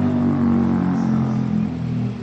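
A motor vehicle's engine running steadily, a low hum.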